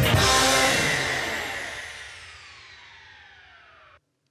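Short musical transition sting: a sudden hit that fades away over about four seconds, its tones sliding downward as it dies out.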